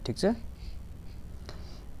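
Felt-tip highlighter drawn across a sheet of paper: a faint, soft rubbing stroke that follows the tail end of a spoken word.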